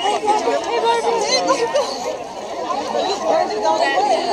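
Chatter of a large crowd of students, many voices talking over one another at once.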